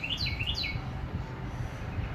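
A small bird singing a quick run of short, falling chirps, about four a second, that stops just under a second in, over a low, steady background rumble.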